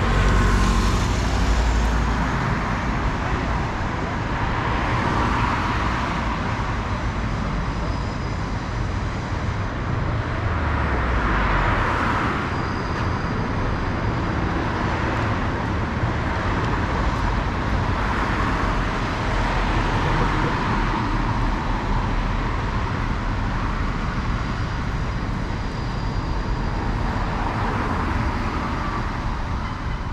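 City street traffic: a steady hum of cars driving past on the avenue, swelling every few seconds as each vehicle goes by, with a heavier low rumble from a passing vehicle in the first couple of seconds.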